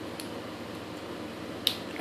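White plastic disposable ear-piercing device clicking: a faint tick just after the start, then one sharp snap near the end.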